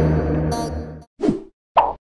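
Background music fades out about a second in, followed by two short, quick plop sound effects from an animated logo intro, the first dropping in pitch.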